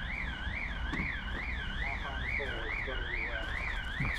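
An electronic alarm sounding continuously, its tone sweeping up and down a little over twice a second in a steady warble. Faint voices in the background.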